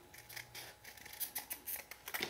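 Scissors cutting through thin cardboard from a small box: a run of faint, short snips that come closer together in the second half.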